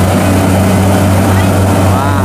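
Kubota DC70 Pro combine harvester's diesel engine running steadily under load as the machine crawls on its tracks through soft, deep paddy mud, a loud, even low drone.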